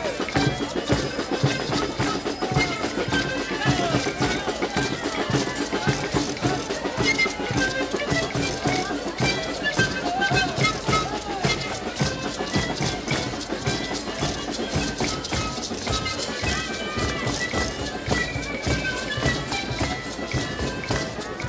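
Live Andean folk music from a children's troupe: large bass drums beating a steady rhythm under violins, with voices from the crowd and performers mixed in.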